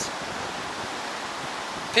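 Steady rush of sea surf washing over a rocky shore.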